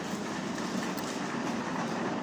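Steady background noise of a large glass-roofed hall, even throughout with no distinct events.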